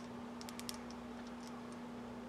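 A few faint, light clicks about half a second in from handling a glass dropper at the neck of a glass tincture bottle, over a steady low hum.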